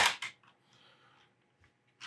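A quick run of computer keyboard keystrokes at the start, with a few fainter key clicks near the end.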